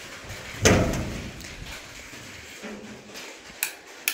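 A wooden door thudding as it is pushed open, a single loud knock about two-thirds of a second in that dies away over half a second, with a couple of light clicks near the end.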